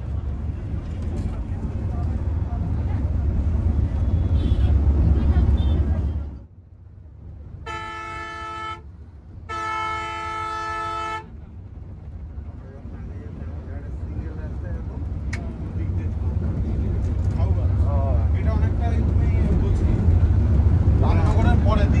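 Volvo coach heard from inside its cab: a deep engine and road rumble at speed that drops away about six seconds in, then two horn blasts, the second longer. The rumble builds back up afterwards.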